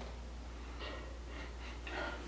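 A man sniffing at a beer can held to his nose: two faint sniffs, about a second apart, over a low steady hum.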